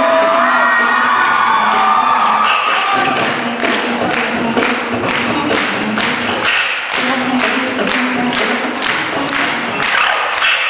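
Beatboxing through a microphone and PA speakers: a vocal melody line carried over the beat for about the first three seconds, then the beat alone, with sharp percussive hits repeating at a steady tempo.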